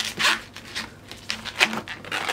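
Latex twisting balloon rubbing and squeaking against fingers in a few short strokes as a knot is tied off in it.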